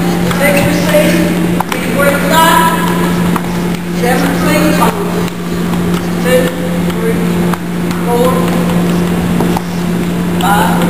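Young students' voices chattering in a gymnasium over a steady low hum, with a few sharp clicks of ping-pong play scattered through.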